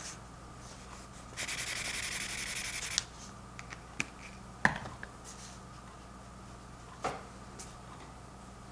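A paintbrush scrubbed briskly against a palette for about a second and a half, working up paint, followed by a few light taps and clicks.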